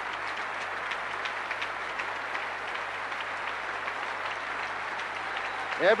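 A large concert-hall audience applauding, a steady, dense patter of many hands, heard through an old radio broadcast recording.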